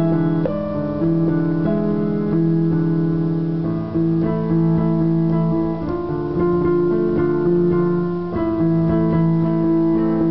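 Electronic keyboard played solo: a progression of held chords, each changing to the next about every second.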